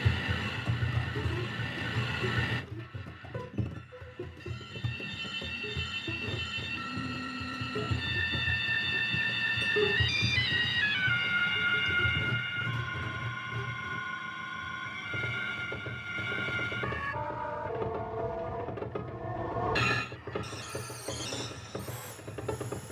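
Free improvised music: a grand piano played inside on its strings, together with layered sustained tones, one of which glides downward about ten seconds in, over a steady low hum.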